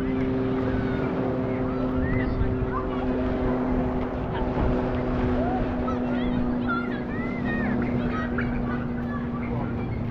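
A steady low engine drone, holding the same pitch throughout, under the scattered voices of people in a crowded park.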